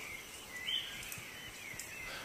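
Tropical forest ambience: a steady, faint chorus of insects and birds, with one high call swelling briefly just under a second in.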